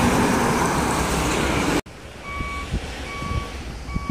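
Loud, steady rush of highway traffic going by, cut off abruptly just under two seconds in. After the cut the traffic is quieter, with short, high electronic beeps repeating a little faster than once a second, like a reversing alarm.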